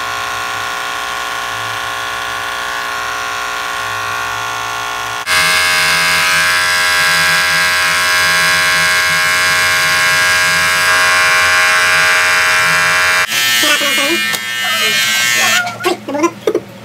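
Handheld electric hair clipper buzzing steadily as it trims a beard. Its pitch and loudness jump abruptly about five seconds in. Voices come in over the buzz in the last couple of seconds.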